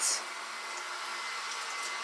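Cold water running steadily from a kitchen faucet into a sink, splashing over a toothbrush held under the stream.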